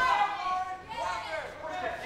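Raised, high-pitched voices shouting around the cage, the fighters' cornermen and spectators calling out instructions to the fighters.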